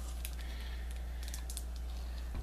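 Faint light clicks and rustles of hands handling a cigar taken from a box, over a steady low electrical hum.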